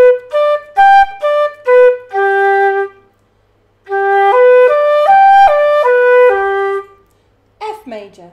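A wind instrument playing a G major arpeggio up an octave and back. The notes are first tongued and separate, ending on a held low G. After a short pause the same arpeggio comes again slurred, the notes joined in one smooth line.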